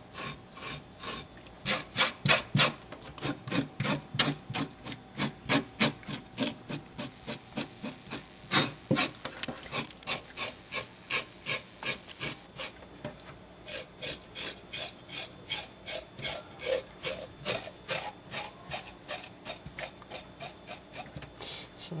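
Scales being scraped off a gutted rainbow trout: quick repeated scraping strokes, about three a second, rasping against the skin.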